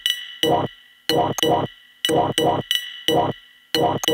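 Homemade techno track: a short vocal-like sample, heard elsewhere by the recogniser as "quack", chopped and repeated two or three times a second in single and double hits, each with a sharp click on top, over steady high ringing tones.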